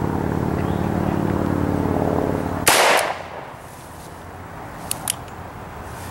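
A single shot from a stainless Ruger GP100 six-inch revolver, sharp with a short ringing tail, about two and a half seconds in, over a steady motor hum. Two light clicks follow about two seconds later.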